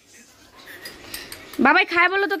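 Spoons clinking and scraping lightly against small bowls as people eat, with a voice starting about a second and a half in.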